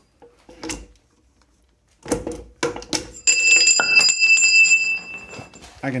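Dana 44 differential carrier being lifted out of its housing by hand: metal clunks, then a sharp clank and a bright metallic ringing that lasts about two and a half seconds. That it comes out by hand at all shows too little carrier bearing preload.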